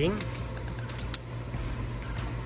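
Metal tape measure being pulled out and laid across a tortoise's shell: a few light clicks and rattles, the sharpest about a second in, over a steady low hum.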